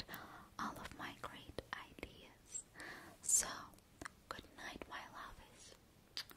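A woman whispering close into a microphone: soft, breathy words with short clicks in between.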